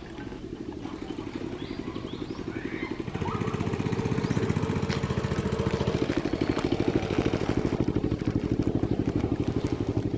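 A small engine running with a rapid, even pulse, growing louder about three seconds in and staying loud. A few faint, short, high chirps sound in the first three seconds.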